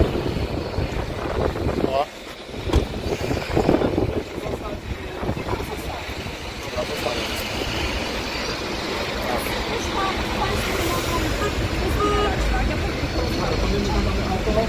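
Outdoor street ambience: a steady low rumble of wind on the microphone and road traffic, with indistinct voices talking nearby.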